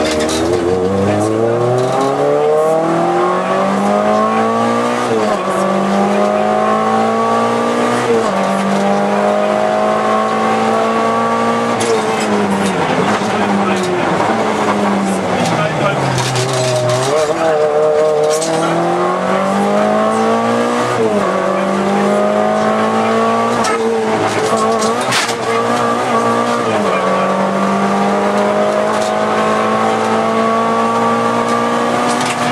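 Volkswagen Golf II GTI 16V rally car's 16-valve four-cylinder engine heard from inside the cabin, pulling hard through the gears: the pitch climbs and drops back at upshifts about five and eight seconds in. Midway the revs fall away as the car slows, then the engine climbs through two more upshifts before holding steady near the end.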